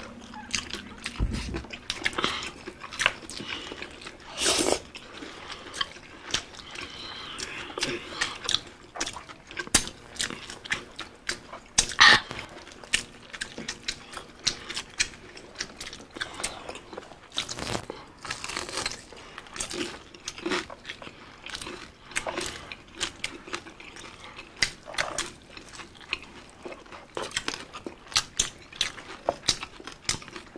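Close-up eating sounds: crunching bites into crispy deep-fried pork belly skin (bagnet), with wet chewing between bites. The crunches come irregularly throughout, the loudest about twelve seconds in.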